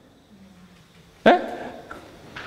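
A pause in a man's talk, then a short, sharp questioning "Eh?" from him just over a second in.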